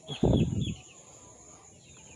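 Faint chirps of birds in a rural garden, with a short muffled rush of noise on the microphone about a quarter second in; then quiet outdoor background.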